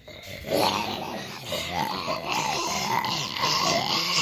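A child's voice making a drawn-out silly noise with a wavering pitch, starting about half a second in and running on without words.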